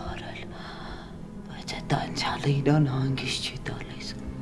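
Soft, near-whispered speech, mostly in the second half, over a faint steady background tone.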